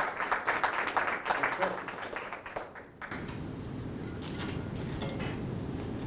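A small audience applauding, the claps thinning out and stopping about three seconds in. After that comes a steady low background hum.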